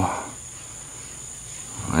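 Crickets trilling steadily in a high, continuous drone of two pitches.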